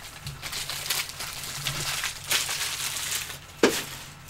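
Plastic trading-card packaging crinkling and tearing in the hands, a steady crackle of small rustles, with one sharp snap near the end.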